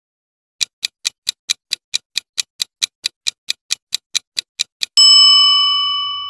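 Countdown-timer sound effect: a clock ticking fast, about five ticks a second for some four seconds, then a single bell ding near the end that rings on and slowly fades, marking time up.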